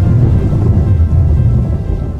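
Rumbling thunder sound effect under music in a title sting, with the low rumble dying away near the end.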